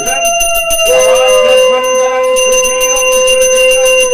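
A puja hand bell rung continuously with rapid strokes, over a loud long held note that breaks off briefly about a second in.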